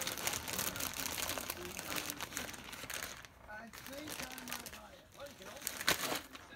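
Plastic zip-top bag crinkling as hands rummage in it for rubber vacuum caps, dying down about halfway through; a sharp click near the end.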